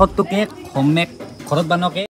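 People's voices speaking in short, broken phrases.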